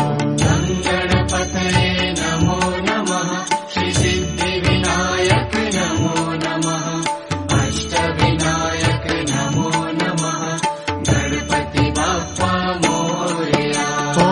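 Indian devotional music for a chanted Ganesh mantra: a melodic interlude with rhythmic accompaniment and no chanted words, between repetitions of the mantra.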